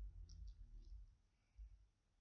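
Very quiet hand crocheting: three faint clicks in the first second, with soft low bumps of the hands and yarn handling the hook.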